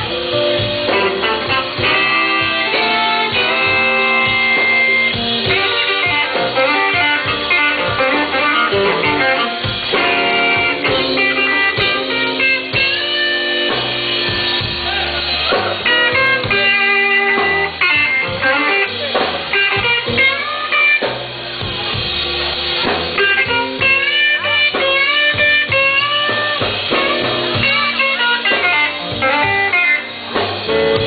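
Live electric blues band playing a slow blues, led by electric guitar with many bent notes over the band.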